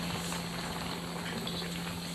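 Noodle soup broth boiling in a wok over a gas burner: a steady bubbling hiss.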